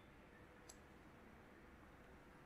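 Near silence: faint room tone, with one faint click about a third of the way in.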